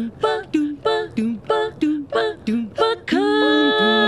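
All-female a cappella quartet singing short staccato scat syllables ("ba, do, ba, do"), about three notes a second. About three seconds in, the voices break into a held chord.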